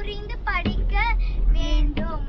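A young girl's high voice in a sing-song, rising and falling in pitch, over the steady low rumble of the car in motion.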